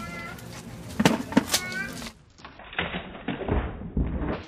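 A few sharp cracks of a model bridge giving way, with brief voice exclamations. The sound then turns slowed-down and muffled, with a deep low thud near the end as the bridge collapses in the slow-motion replay.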